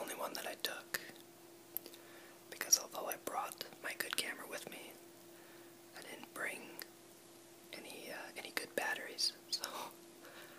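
A person whispering close to the microphone in short phrases with brief pauses, over a faint steady hum.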